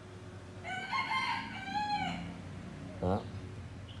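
A rooster crowing once: a single call lasting about a second and a half, starting just under a second in, rising, held, then falling away at the end.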